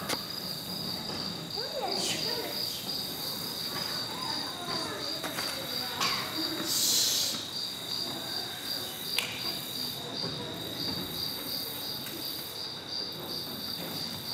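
Recorded cricket chirping played as a stage sound effect: a steady, evenly pulsing high chirp that runs on throughout, with a few faint knocks and a short hiss about seven seconds in.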